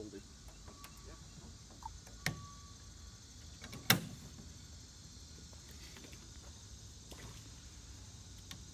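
Steady high buzz of insects, broken by two sharp knocks about a second and a half apart, the second much louder.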